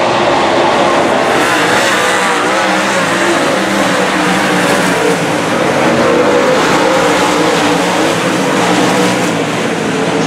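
Dirt late model race cars' V8 engines at racing speed on a dirt oval, several engines overlapping, their pitch rising and falling as the cars run through the corners and down the straights.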